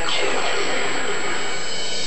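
Electronic music played through a floor-standing Altus hi-fi loudspeaker: a held, many-toned synth sound with a sweep that falls from high to low.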